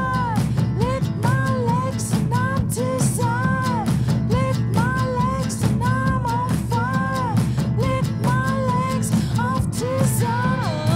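Rock song with drum kit and guitar, and a short high sung phrase repeated about once a second.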